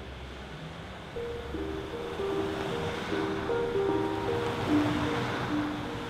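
A low rumble for the first second, then background music enters: a slow melody of long held notes over a steady hissing wash, growing louder.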